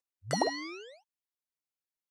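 A short cartoon-style sound effect: a single quick upward-gliding 'bloop' lasting under a second, followed by dead silence.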